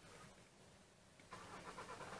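Near silence: room tone, with a faint soft rustle starting a little past the middle.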